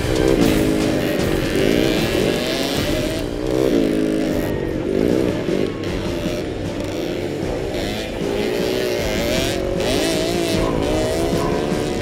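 Vintage motocross motorcycle engines revving, the pitch rising and falling several times as bikes accelerate past, with music underneath.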